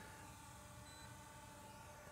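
Near silence, with only a faint steady low hum.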